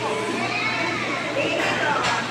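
Children's voices talking and playing over the general chatter of a busy fast-food dining room.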